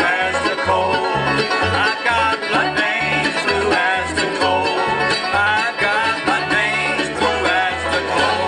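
Live bluegrass band playing an instrumental break: banjo, fiddle, mandolin and guitar over steady alternating upright-bass notes, with sliding fiddle notes in the melody.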